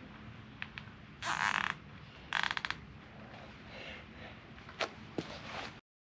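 Two short bursts of a power driver, about a second apart, snugging up bolts, with a few light clicks and knocks before and after.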